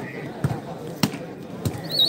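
A volleyball bouncing on a hard dirt court, three knocks about every half second, over the chatter of the crowd. A short high whistle-like note sounds right at the end.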